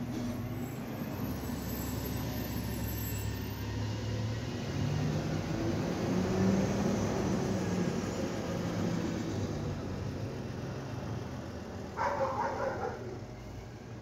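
Republic Services automated side-loader garbage truck's diesel engine running, its pitch rising as it pulls away and accelerates midway, then easing off. A brief louder burst sounds near the end.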